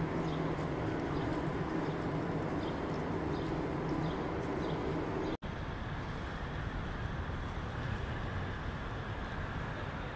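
City street ambience: a steady low rumble of traffic and machinery, with faint short ticks through the first half. The sound cuts out for an instant about five seconds in and resumes as a steadier rumble.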